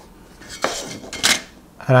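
A stainless steel Incra marking rule being lifted and moved off a wooden board after a pencil mark: a soft scratch, then sharp metallic clinks, the loudest just past a second in.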